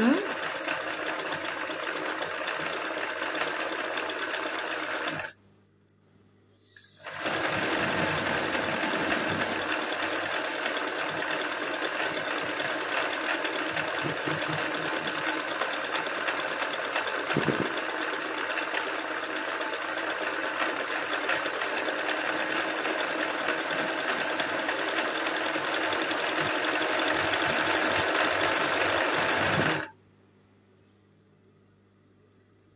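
Sewing machine stitching satin-stitch embroidery on fabric in a steady run. It stops about five seconds in, starts again about two seconds later and runs on until it stops right at the end.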